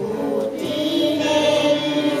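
Young girls singing a Romanian Christian song together into microphones, holding long, drawn-out notes.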